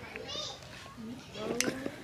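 Faint voices talking in the background, one briefly high-pitched about a third of a second in and another near the middle, with a single light click partway through.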